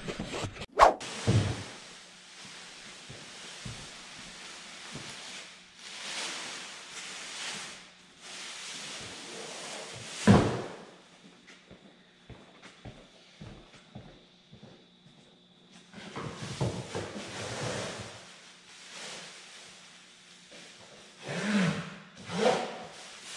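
Workshop handling noises: a sharp click about a second in, shuffling and rustling, and a single thump about ten seconds in. Near the end, automotive masking plastic rustles as it is pulled from its package.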